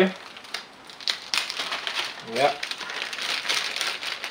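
Thin clear plastic parts bag crinkling as it is handled and opened, quieter at first and turning into a dense crackle from about a second in.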